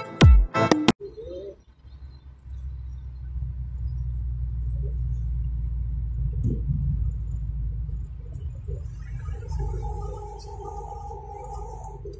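A heavy-beat intro music track cuts off abruptly about a second in, followed by a steady low street rumble of traffic and wind on the microphone. Near the end a steady tone sounds for about two seconds.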